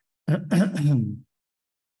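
A man clearing his throat once, a short voiced rasp lasting about a second.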